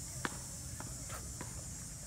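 Footsteps going down concrete stairs: a few soft, irregular steps, faint against a steady background hiss.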